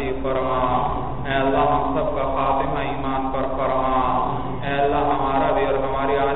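Melodic devotional chanting by a voice, drawn out in long held notes with gliding pitch; new phrases begin about a second in and again at about four and a half seconds.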